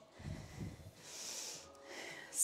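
A woman breathing hard during a strength exercise: a short, hissing exhale about a second in, after a few soft, low thumps.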